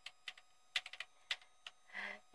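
Faint, irregular clicking of computer keys, with a quick run of clicks a little before the middle.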